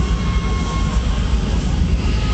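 Loud, steady arena din: booming bass from the PA sound system mixed with crowd noise, with one voice in the crowd holding a single high note through the first second.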